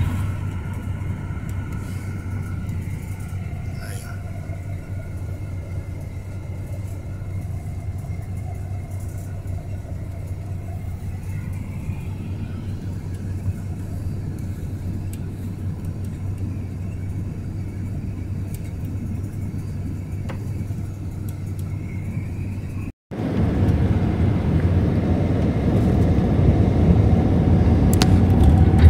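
Steady low rumble of an intercity coach bus at highway speed, heard from inside the passenger cabin, with a faint whine that drifts slowly up and down in pitch. About 23 s in the sound cuts out for a moment and comes back as a louder rumble.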